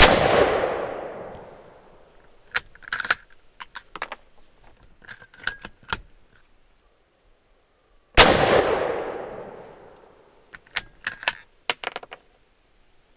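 Two rifle shots about eight seconds apart from a .257 Roberts bolt-action rifle (a sporterized Arisaka Type 30 carbine), each with a long echo fading over about two seconds. After each shot come a series of metallic clicks and clacks as the bolt is worked to eject the spent case and feed the next round from the magazine.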